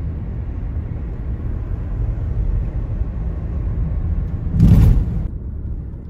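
Car interior road noise while driving: a steady low rumble of tyres and engine. About four and a half seconds in, a brief loud rush of noise stands out above it.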